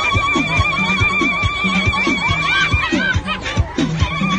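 Live music at a crowd dance: a steady drumbeat of about two strokes a second, under a high, rapidly warbling trill of women's ululation that holds for nearly three seconds and then breaks up.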